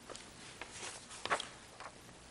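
Faint scattered taps and rustles of papers being handled on a wooden podium, picked up by the podium microphone, with the most distinct tap a little past a second in.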